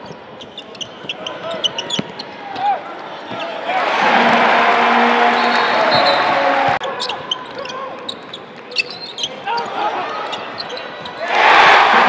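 Basketball game court sound: a ball being dribbled on the hardwood floor and sneakers squeaking. The arena crowd cheers loudly from about four seconds in, breaks off suddenly just before seven seconds, and surges again near the end.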